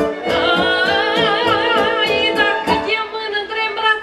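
Romanian folk music from a live band: a woman singing an ornamented melody over violin and a steady beat. There is a held note with wide vibrato about a second in.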